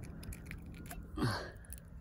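A short vocal exclamation about a second in, falling in pitch, over a low steady rumble and faint clicks of handling noise.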